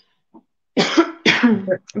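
A woman coughing and laughing at once: three quick coughs starting about a second in, after a near-silent start.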